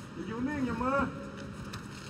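A man's voice speaks briefly, under a second, then low steady background noise.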